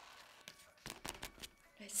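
Scratch card being scratched off, a run of short quick scrapes from about half a second to a second and a half in.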